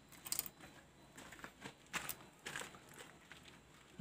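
Faint, scattered clicks and rustles of hands handling motorcycle wiring and plastic connector plugs.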